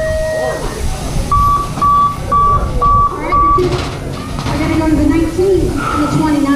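Five short, evenly spaced electronic beeps at one pitch, about two a second, from a BMX track's start-gate system, with voices around them.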